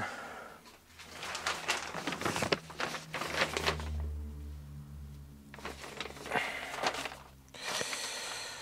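A large paper plan sheet rustling and crackling as it is handled and unrolled across a workbench, in irregular bursts. A low steady hum sounds briefly in the middle.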